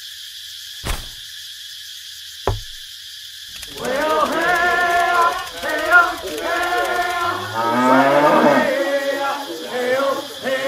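Two sharp clicks about a second and a half apart over a steady hiss, then, from about four seconds in, loud pitched vocal sounds that waver and slide in pitch.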